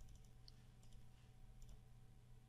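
Near silence: faint room hum with a few soft computer-mouse clicks.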